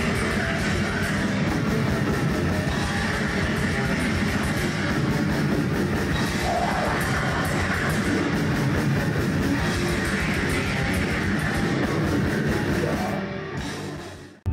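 Extreme metal band playing: heavily distorted guitars over fast, dense drumming, fading out near the end.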